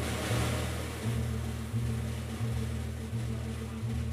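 Live jazz quartet of saxophone, piano, double bass and drums playing a ballad. Low bass notes change about once a second under a high cymbal wash that fades after a crash just before, with held chord tones above.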